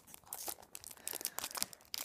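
The wrapper of a football trading-card pack crinkling and crackling in the hands as it is worked open, a quiet run of small irregular crackles.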